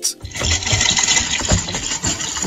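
Glass-cracking sound as a foot lands on a glass walkway floor and cracks spread across it: a dense crackle that starts a moment in and keeps going, with a few dull thumps underneath.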